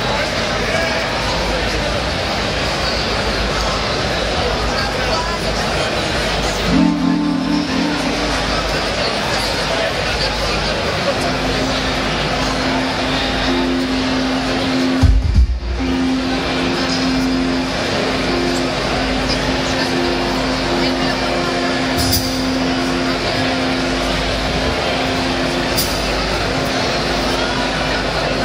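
Live psychedelic indie rock band playing amplified through a PA: a dense, noisy wash of band sound, with sustained low keyboard notes held from about halfway through and a low thump near the middle.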